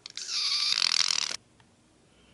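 White liquid hair-bleach developer pouring from a bottle into a plastic mixing cup: a hissing pour lasting about a second that stops abruptly.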